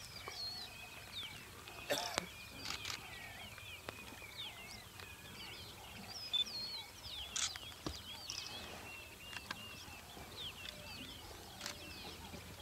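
Small birds chirping and whistling all through, many short rising and falling calls overlapping. There are a few sharp clicks, about two seconds in and again past the middle.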